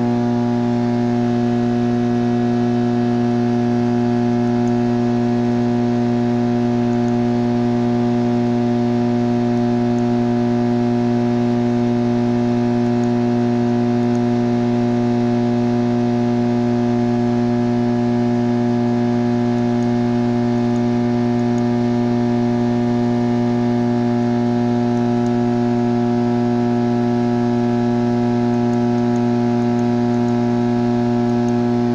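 Steady electrical hum of medium-voltage substation equipment: one low tone with a stack of evenly spaced overtones, typical of mains hum from energised switchgear and transformer.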